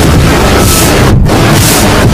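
Many copies of a logo animation's sound played on top of each other, each run through pitch and distortion effects, making one loud, clipped, noisy cacophony. It comes in two harsh surges with a brief dip just past halfway.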